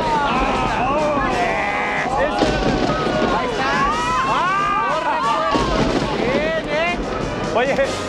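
Music playing under a group of people's excited shouts and exclamations.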